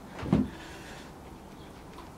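A single short, dull thud about a third of a second in, over quiet room tone.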